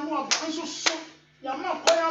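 A few sharp hand claps, about three in two seconds, struck between phrases of a preacher's voice.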